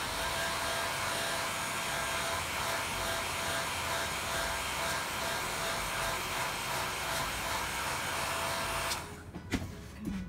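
Handheld hair dryer running steadily on high, blowing on a canvas to dry wet acrylic paint, a rushing blow with a faint steady whine. It cuts off about nine seconds in, followed by a couple of light knocks.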